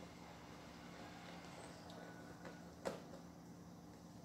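Near silence: a faint steady low hum of room tone, with one soft click about three seconds in.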